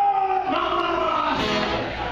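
A man sings live into a microphone with guitar accompaniment. He holds one long sung note for about a second and a half, then moves into a shorter phrase.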